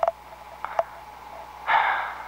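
Open intercom line with steady hum and hiss, a few faint clicks, and a short breathy rush of noise near the end.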